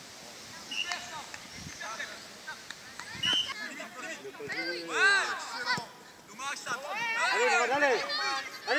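Players and spectators around a football pitch shouting and calling out, with no words clear. The calls are sparse at first, then come in a run of loud rising-and-falling shouts from about halfway through.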